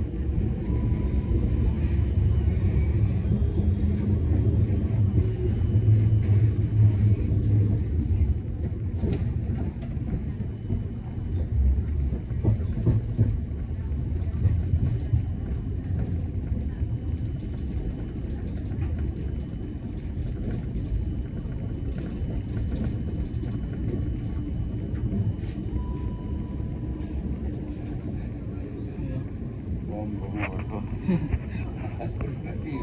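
Siemens Combino NF12B tram running, heard from inside the passenger compartment: a steady low rumble of traction motors and wheels on rail, louder for about the first twelve seconds and then easing off.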